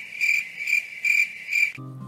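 An insect, cricket-like, trilling in a steady high-pitched pulse about twice a second, stopping shortly before the end.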